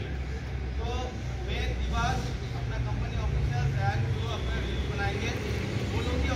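Motorcycle engines idling, a steady low rumble, under people's voices talking.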